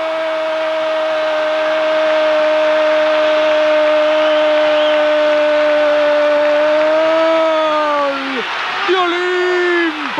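Argentine TV football commentator's long held shout of "gol" for a goal just scored: one sustained call at a steady pitch, lasting about eight seconds and dropping in pitch as it breaks off, followed by a brief spoken phrase near the end. Underneath is a steady crowd noise.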